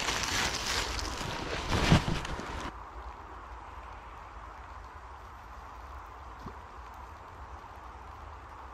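Wind rumbling on the microphone, with a louder gust or handling noise about two seconds in. It cuts off abruptly to a faint, steady outdoor hiss by a slow-flowing river.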